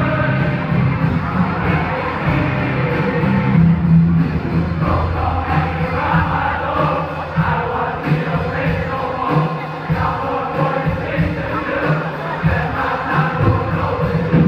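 A large group of male voices singing together over live band music.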